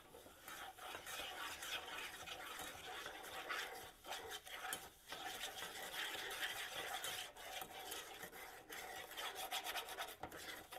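Spoon stirring and scraping around a metal saucepan, mixing gritty cinnamon sugar into melted butter and brown sugar, with brief pauses about four and five seconds in.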